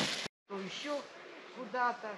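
Faint, brief voices of people talking, following a short total dropout in the audio at an edit cut.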